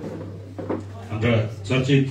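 Men's voices, with a short knock of something being handled about two thirds of a second in, over a steady low hum.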